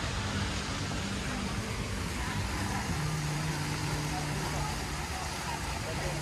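A steady low motor hum over an even rushing background noise, with its pitch shifting slightly about halfway through.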